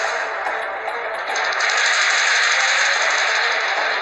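Dramatic background music from a TV drama score: a dense, hissing wash with a fast flutter on top, swelling again a little over a second in.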